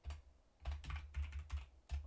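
Typing on a computer keyboard: a word typed out in a few quick bursts of keystrokes, each stroke with a dull thud under it.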